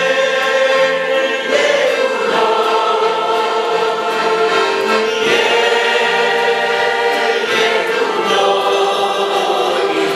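A congregation singing a hymn together in unison behind a male song leader, with accordion accompaniment; long held notes that change every second or two.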